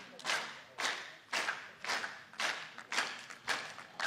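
Audience clapping together in a steady rhythm, about two claps a second.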